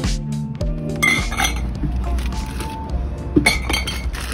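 Background music with a beat for about the first second, then glass bottles clinking against one another as a hand rummages through a cooler box packed with bottles, with the sharpest clinks a little before the end.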